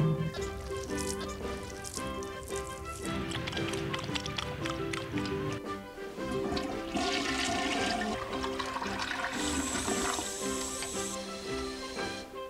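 Background music, with a toilet flushing in the second half: a rush of water starting about seven seconds in and hissing for several seconds.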